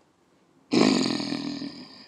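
A single harsh, raspy roar beginning about two-thirds of a second in and fading over about a second and a half.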